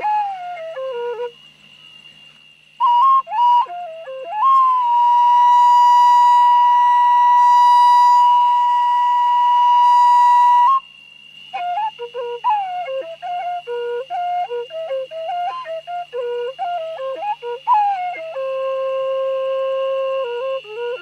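Hmong raj nplaim, a bamboo free-reed pipe, played solo in short stepping, word-like phrases. About a second in it pauses briefly, then holds one long high note for about six seconds before the phrased melody resumes, closing on a held lower note.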